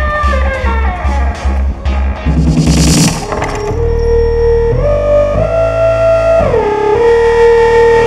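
Dark psytrance played live: a steady pounding kick and bass for the first two seconds, then a rising noise swell. The beat drops out into a breakdown where a sustained synth lead slides up and down in pitch.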